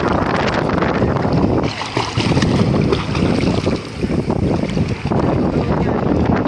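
Wind buffeting the microphone, mixed with water sloshing and splashing close by at the surface of shallow sea; the loud rushing noise swells and dips unevenly.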